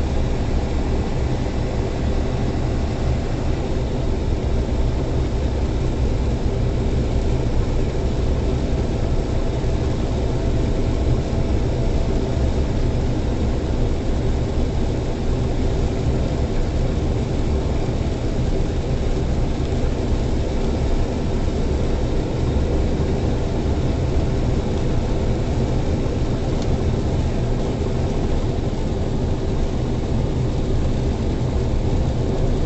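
Steady low drone of a semi truck's diesel engine and tyres rolling on a snow-packed highway, heard from inside the cab at cruising speed.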